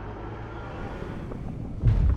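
Wind rushing over a paraglider pilot's camera microphone in flight: a steady low rumble that jumps much louder just before the end.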